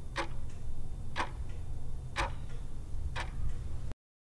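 Clock-ticking countdown sound effect: four ticks about a second apart, with fainter ticks between them, over a low steady hum.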